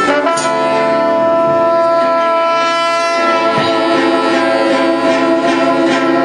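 Choro ensemble of trombone and clarinet: a quick phrase gives way just after the start to a long held chord, the closing chord of a tune.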